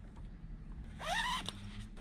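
A sleeping bag zipper pulled in one quick stroke about a second in, rising in pitch, followed by a small click.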